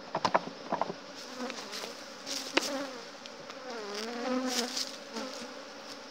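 Honeybees buzzing around an open hive, single bees passing close to the microphone so the hum wavers up and down in pitch. A few sharp knocks of wooden hive parts sound near the start and once more in the middle as the honey super is lifted off.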